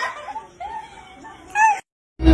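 Two short, pitched, meow-like vocal calls: a quieter one about half a second in that slides down, then a louder, shorter one near the end that rises and falls before the sound cuts out abruptly.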